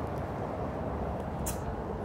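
Steady low rumble of distant city traffic, with one short sharp click about one and a half seconds in.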